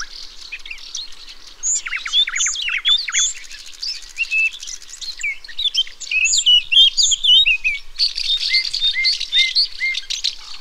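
Several European songbirds singing at once, a busy chorus of overlapping chirps, quick downward-sweeping notes and warbled phrases. Near the end one bird repeats a short note about five times.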